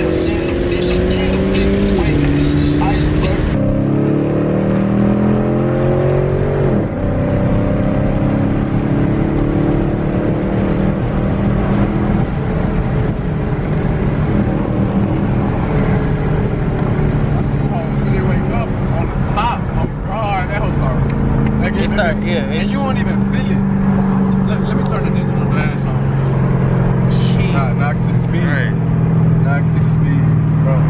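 Dodge 5.7 HEMI V8 muscle cars accelerating hard, the engine pitch climbing and dropping back at each upshift for about the first seven seconds. Then a V8 runs at a steady cruise with a low drone.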